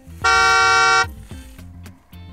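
A single steady, bright horn toot lasting just under a second, starting about a quarter-second in, over background music with a low, even beat.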